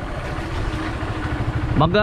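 Small motorcycle engine running steadily under way on a dirt road, with a rushing haze of wind and road noise over it.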